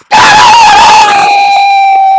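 A long, loud, high-pitched cry held on one steady pitch for about two seconds.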